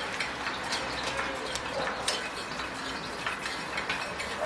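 Vintage East German 'Bat' gasoline blowtorch burning with a loose yellow flame, crackling and sputtering irregularly at the burner head. The yellow flame is the sign that the burner is not yet hot enough to vaporise the gasoline properly.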